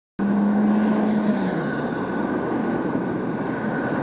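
City street traffic noise: a steady rush of passing vehicles, with a low engine tone that drops slightly in pitch about a second and a half in.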